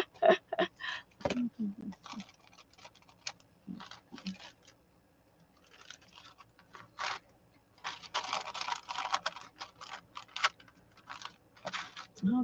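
Paper and cloth being handled and pressed against a cutting mat, giving irregular light taps and rustles, with a longer stretch of rustling from about eight to nine and a half seconds in.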